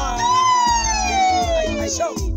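A singer holds one long note that slowly falls in pitch over the backing track of a Ugandan pop song with a steady bass line.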